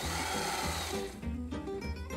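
Sewing machine running in a short whirring burst for about the first second, then stopping, over steady background music.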